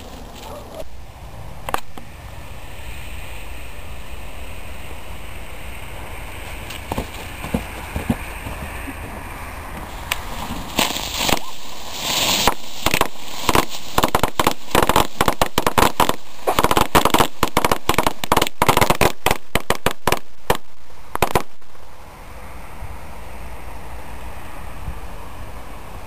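Ground firework cake going off: a rapid string of sharp bangs and crackles lasting about ten seconds, starting partway in, coming faster toward the end and then stopping suddenly.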